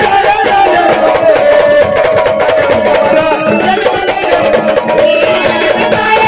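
Live Marathi gondhal folk music: an electronic organ carries the melody over steady, fast drumming.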